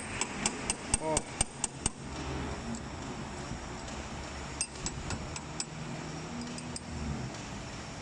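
Light metal-on-metal taps, about four a second for the first two seconds, as the boring tool set in a lathe is tapped into position with a small steel rod to adjust the cut. After that only a few faint clicks remain over a low steady hum.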